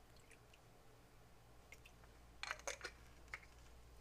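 Near silence as a thin stream of syrup is poured into a glass goblet, with a few faint short ticks about two and a half seconds in.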